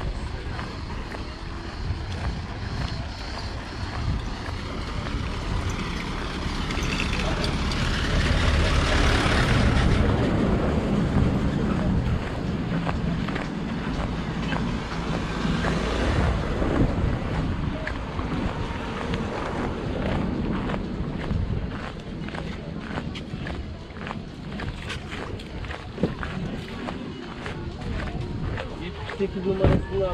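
Seaside outdoor ambience with wind on the microphone and background voices, as a car drives slowly past along the gravel road, loudest around the middle.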